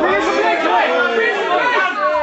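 Several men shouting over one another at ringside, loud and continuous, a jumble of overlapping voices with no single voice standing out.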